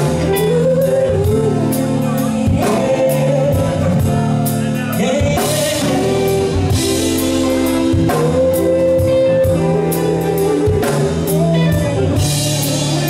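Live band performing a pop duet: a man and a woman singing into microphones over electric bass, electric guitar and a drum kit keeping a steady beat.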